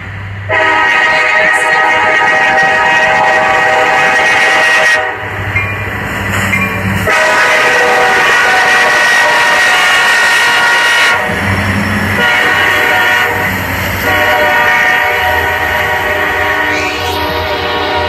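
Multi-chime air horn of a Buffalo & Pittsburgh Railroad freight locomotive sounding right alongside, very loud: two long blasts, a short one and a final long one, the grade-crossing signal. In the gaps between blasts the locomotives' diesel engines rumble and the train rolls past.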